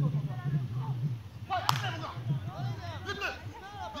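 A single sharp smack about one and a half seconds in, among high children's voices and a low steady hum.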